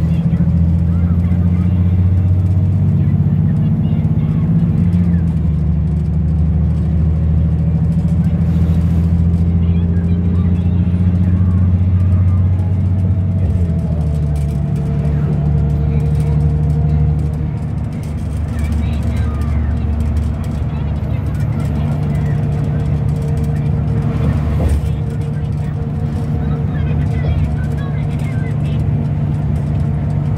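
Cabin noise inside a moving Metropolitano bus-rapid-transit bus: a steady low engine and drivetrain drone. The drone steps down in pitch about 13 seconds in and dips in level a few seconds later as the bus changes speed.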